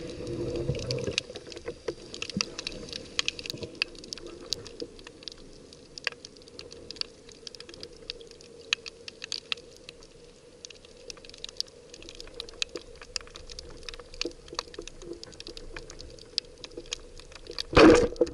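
Underwater reef ambience heard through an action camera's waterproof housing: a steady crackle of many irregular sharp clicks from snapping shrimp, over a faint steady hum. Near the end comes a short, loud rush of water and bubbles.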